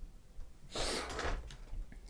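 A man's sharp, breathy exhale through the nose, lasting about half a second, with a faint click near the end.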